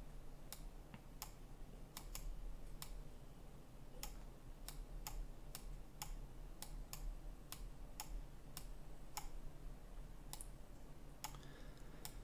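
Computer mouse clicking: faint, sharp single clicks at an uneven pace, roughly two a second, over a low steady hum.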